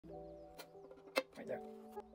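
Violin strings plucked and left ringing while the instrument is being tuned, a new note sounding about three quarters of the way in, with two sharp clicks in the first second and a bit.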